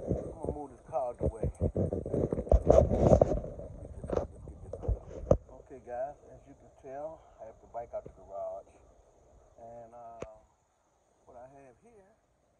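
A man speaking indistinctly in short phrases. A run of sharp knocks and handling clatter fills the first five seconds.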